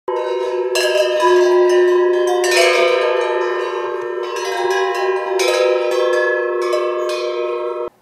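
A düzia, a hanging set of tuned chanove (large Rhodope livestock bells), ringing together: many bell tones sounding at once and ringing on, with fresh jangles about a second in, at about two and a half seconds, and at about five and a half seconds.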